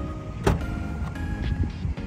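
Toyota Camry trunk lid unlatching with a single sharp clack about half a second in, over background music.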